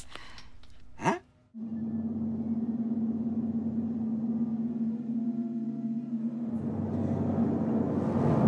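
A brief click as a plastic soda bottle cap is twisted open, then a short rising whoosh. After a moment's silence, a steady, low, eerie drone with a rumbling rush of gushing liquid comes in suddenly and holds, swelling near the end.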